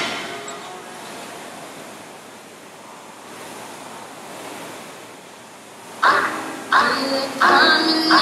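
Steady whooshing of air-resistance rowing machine fans as several rowers pull. Music with singing starts abruptly about six seconds in.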